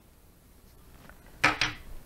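Scissors cutting through heavy nylon string: a short crunchy snip in two quick parts about a second and a half in, after a low background hush.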